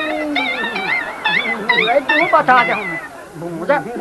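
A performer's voice wailing in a wavering, warbling pitch that wobbles up and down in short repeated waves, then a few short, sharper cries near the end.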